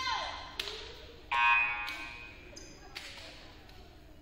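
A short, shrill whistle blast about a second and a half in, ringing in the gymnasium: a referee's whistle ending the rally. A sharp knock comes just before it, and fainter knocks follow.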